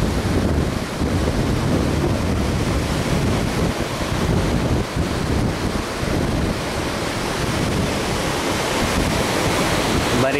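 Steady wash of surf, mixed with wind rumbling on the microphone.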